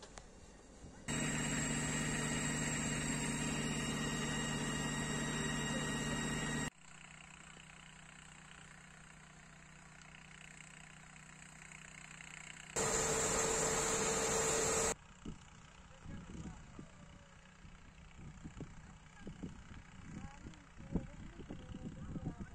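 A steady engine hum in two stretches, each starting and stopping abruptly, the first about five seconds long and the second about two; then a run of irregular short crackles and knocks.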